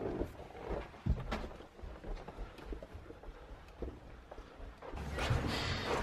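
Faint irregular footsteps and soft knocks of people walking along a carpeted hotel corridor, with a louder rush of noise near the end as they come into the room.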